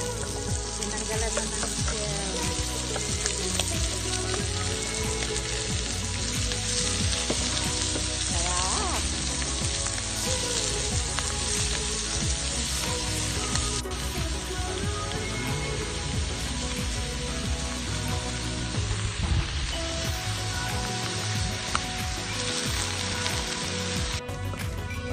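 Mussels, shallots and garlic sizzling steadily as they fry in a pan on a portable gas stove, stirred with a wooden spatula.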